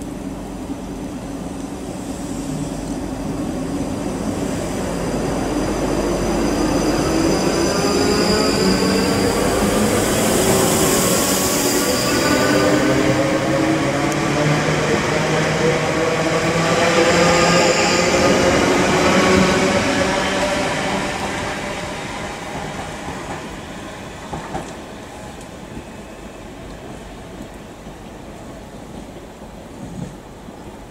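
South Western Railway Class 458 electric multiple unit passing close by along the platform, its traction motor whine climbing in pitch as it picks up speed, with thin high wheel squeal. It fades over the last several seconds as the train moves away down the line.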